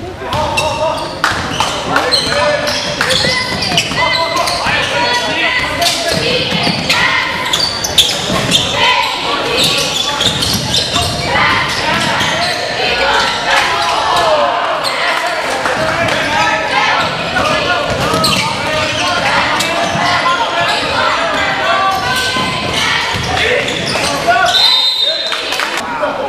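Basketball game in a gymnasium: a ball dribbling and bouncing on the hardwood court among spectators' voices and shouts, with a referee's whistle near the end.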